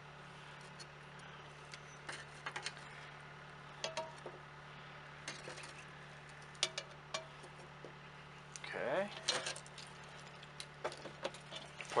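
Metal coal tongs clinking against a steel charcoal chimney starter as lit briquettes are picked out one at a time: faint, scattered clinks and scrapes, a few with a short metallic ring. A steady low hum runs underneath, and a brief voice-like sound comes about nine seconds in.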